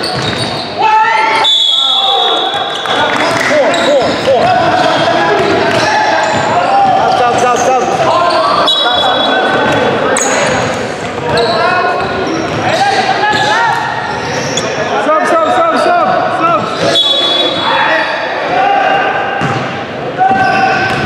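Indoor basketball game heard in a gym hall: players and spectators shouting and talking, with a basketball bouncing on the hardwood court, all echoing in the large room.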